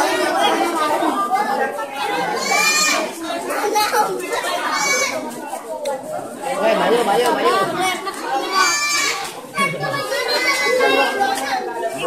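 A crowd of children talking over one another in loud, unintelligible chatter, with several high-pitched shouts and calls rising above it at intervals.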